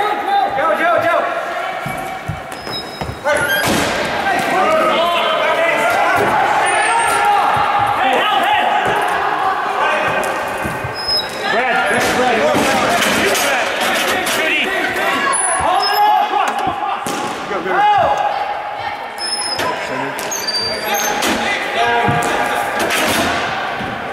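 Players shouting and calling to each other through a broomball game, the voices echoing in a large rink, with sharp knocks every few seconds as sticks strike the ball.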